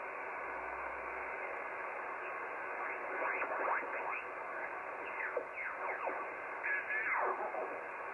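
Yaesu HF transceiver receiving the 40 m band in lower sideband while the dial is tuned: steady band hiss with several sweeping whistles, mostly falling in pitch, from the middle on, as it tunes across signals. It is the band's background noise with the local interference gone.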